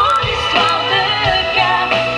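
Live pop ballad: a woman's singing voice over a band with drums, electric guitar and keyboards, heard from within the audience.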